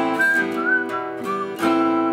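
Acoustic guitar chords with a whistled melody over them. The whistle runs as a string of short notes that bend slightly in pitch, then a longer held note near the end as a new chord is strummed.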